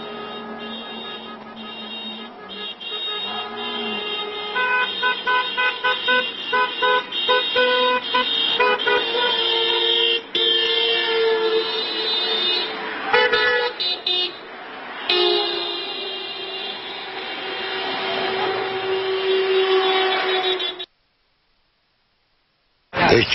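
Several car horns honking at once, some in quick repeated toots and others held for long blasts, over street noise. The sound cuts off abruptly near the end.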